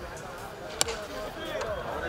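A cricket bat striking a tennis ball once: a single sharp knock just under a second in, over faint distant voices.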